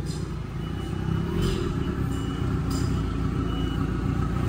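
A vehicle engine idling steadily with a low rumble, with a faint thin high-pitched tone sounding on and off in the middle.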